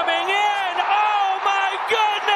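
A man's voice in one long, drawn-out call, with wavering pitch and no clear words.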